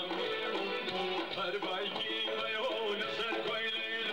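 Kurdish folk music played on an electronic keyboard: a running melody over a held low tone.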